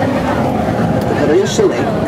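Loud noise of a Snowdon Mountain Railway steam rack locomotive working hard, heard from inside the carriage it pushes up the mountain.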